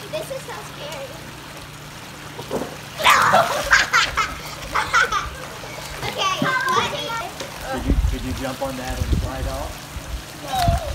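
Water splashing about three seconds in as a child jumps and lands on an inflatable tumbling mat floating in a pool, followed by children's high voices calling out.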